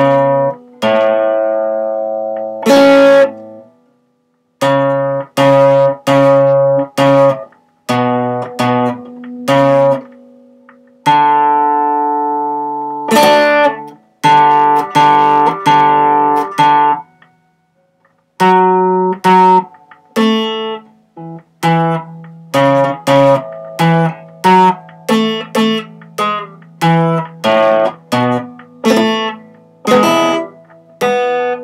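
Acoustic guitar played solo and unaccompanied: chords strummed one at a time, each rung briefly and then damped, in an uneven slow rhythm with two short pauses, near the start and about halfway through.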